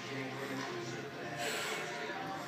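Indistinct voices over background music, at a low level; no impacts from the barbell.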